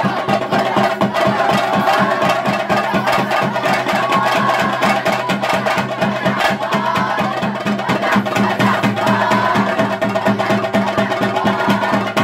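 Theyyam ritual drumming: chenda drums played in fast, unbroken strokes, with a steady held tone underneath.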